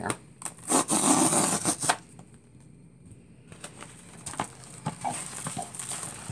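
A snap-blade utility knife slices through a paper envelope, giving a rasping tear that lasts about a second. Softer crinkling and rustling of paper packaging follows as the contents are pulled out.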